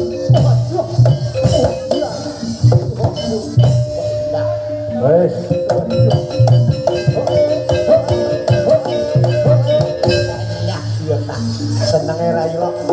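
Live gamelan accompaniment for a Barongan dance, with repeated low drum beats, sharp percussion strokes and held metallophone tones. A wavering melody line runs above them.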